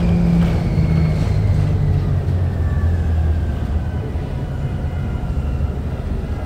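A 2009 Orion VII NG hybrid bus with a Cummins ISB engine and BAE Systems HybriDrive running: a steady low engine drone under a thin high whine from the hybrid drive that falls slowly in pitch.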